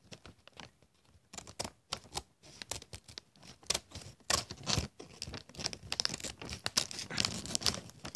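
A crinkly plastic snack bag being handled and pulled at to tear it open: irregular short rustles and crackles, sparse at first and busier and louder from about halfway.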